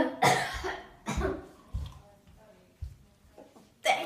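A girl coughing and spluttering in several short bursts just after sipping a sour drink of red-cabbage water with citric acid.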